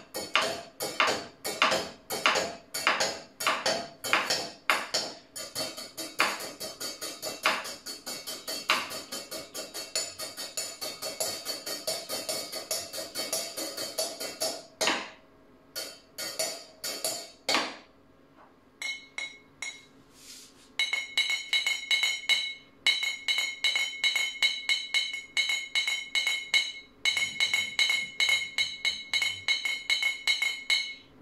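A wooden stick beating fast inside a ceramic mug: a quick run of sharp clacks, which speeds up, breaks off for a few seconds and then comes back. In the last third each strike carries a ringing tone.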